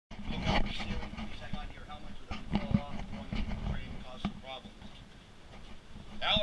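Indistinct talk of several people over a steady low rumble and hum, with a few sharp knocks.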